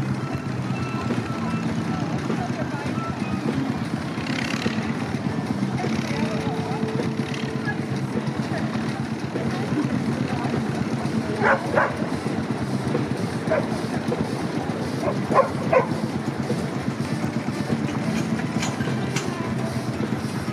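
Outdoor steam-rally ambience: a steady low rumble of slow-moving steam traction engines, with indistinct voices and a few short sharp calls over it in the second half.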